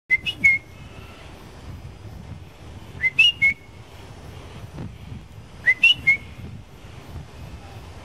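A bird's whistled call: a quick phrase of three short, sharp, rising notes, given three times about three seconds apart.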